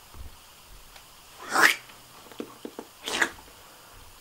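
Two short breathy sounds from a person, about a second and a half apart. The first is the louder, and a few faint clicks fall between them.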